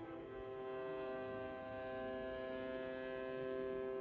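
Bowed string ensemble of violins, viola, cello and double bass holding a soft, sustained chord, steady in pitch and level.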